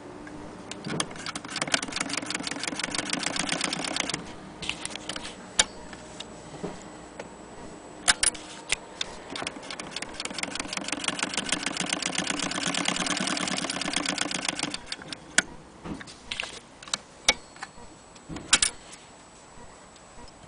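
Willcox & Gibbs hand-cranked chain-stitch sewing machine stitching through fabric: a rapid, even mechanical clatter in two runs, one of about three seconds and a longer one of about six seconds, with scattered single clicks between and after.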